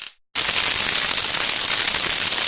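Electric crackling sound effect: a dense, steady crackle that starts abruptly about a third of a second in after a short silent gap.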